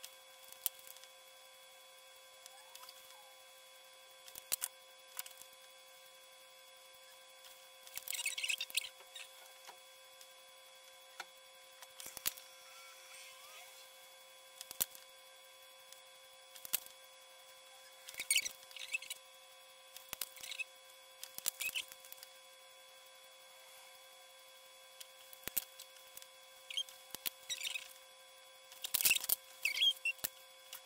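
Copic alcohol markers drawn across paper card in short scratchy strokes, colouring a bear's fur, in several quick bursts. Scattered sharp clicks come between the bursts, from the markers being uncapped, capped and set down.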